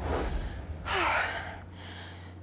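A woman breathing hard, with one loud gasping breath about a second in and a low rumble under the first second. She is winded from a high-intensity workout.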